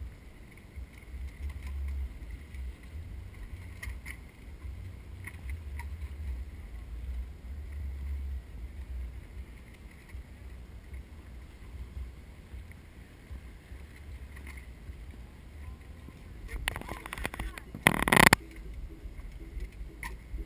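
Wind rumbling on the microphone while a trials bike hops along rocks, its landings heard as a few faint taps. Near the end comes a loud, rough, scraping noise lasting about a second and a half, loudest at its close.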